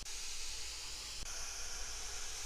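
Blackboard eraser rubbing chalk off a blackboard: a steady scrubbing hiss.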